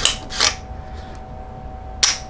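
Sharp metallic clicks and a short rasp from an AR-15's trigger group and action being worked by hand: a click at the start, a brief metallic rasp about half a second in, and another right at the end, over a faint steady hum. The trigger is being tried after an adjustable grip screw has taken out its creep.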